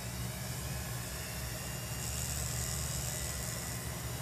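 Flexible-shaft rotary tool running steadily with a low motor hum while its bit opens up a small hole in a rosewood burl pendant for an eye hook; a higher hiss joins for a second or so in the second half.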